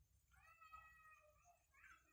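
A faint, drawn-out animal call with a steady pitch lasting about a second, then a second, shorter call near the end.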